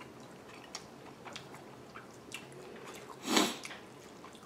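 A man chewing a mouthful of braised pork rib, with faint wet mouth sounds and small clicks. Near the end there is one short, louder breathy noise.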